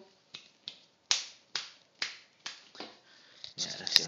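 A person making sharp clicks, about two a second, to call a puppy, with a quicker cluster of clicks near the end.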